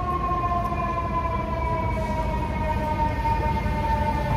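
Fire truck siren passing, one long steady wail that slowly falls in pitch, over a low rumble.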